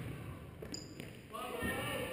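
Basketball game in a gym: a few faint ball bounces or knocks on the court, then spectators' voices rising about two-thirds of the way in.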